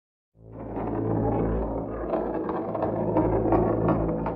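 Low rumbling drone that fades in after a moment of silence and holds steady, a dark-ambient sound effect laid under a chapter title card.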